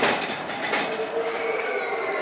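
Matterhorn bobsled running along its track, a steady rolling rumble with a sharp clack at the start and another less than a second in. About halfway through, a faint high wheel squeal comes in.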